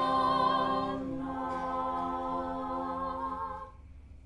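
Six unaccompanied voices, two sopranos, alto, two tenors and bass, singing an English Renaissance madrigal. They hold long sustained chords that change once about a second in and cut off shortly before the end, leaving a brief echo of the room.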